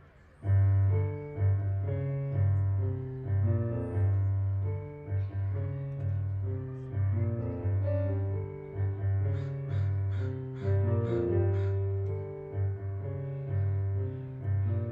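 Roland digital piano being played; a piece begins abruptly about half a second in. A repeating low bass line runs under chords and a melody.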